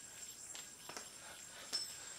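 Quiet handling noise of a yo-yo being thrown by hands in padded MMA gloves: a few soft clicks and rustles, the loudest just before the end.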